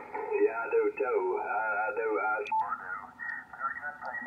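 Single-sideband voice from a 75-meter amateur radio conversation coming through the Yaesu FTdx5000MP transceiver's speaker, thin and cut off in the highs. About two and a half seconds in there is a click, and the received voice turns narrower still as the receiver's narrow filter engages.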